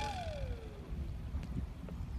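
Low rumble of wind on the microphone at the shoreline. In the first second a single whistle-like note slides up and then falls away.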